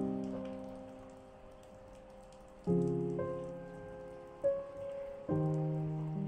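Calm, slow piano chords over rain sounds. New chords are struck about three seconds in, again near four and a half seconds and just after five seconds, each one ringing and fading out, with the patter of rain beneath.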